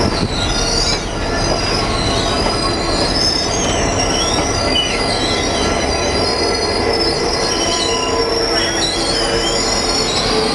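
Train wheels squealing on steel rails, a high wavering squeal that keeps rising and falling over the steady rumble of the train rolling along.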